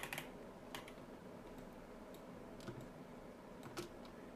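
Computer keyboard keys clicking a few separate times over quiet room tone: a pair right at the start, one just under a second in, and a few more near the end. They include the Ctrl+Z undo shortcut being pressed.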